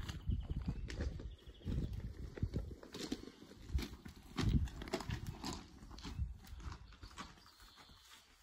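Footsteps crunching on crushed-stone gravel, an uneven run of steps that grows quieter near the end.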